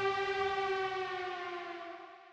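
The closing held electronic tone of a dubstep track: a single sustained note that sags slightly in pitch and fades out. The last low bass notes under it stop about half a second in.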